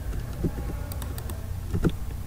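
A few keystrokes on a computer keyboard, over a low steady hum.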